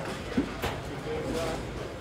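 Bowling-center background noise: a steady low rumble with faint distant voices, and one sharp clack about half a second in.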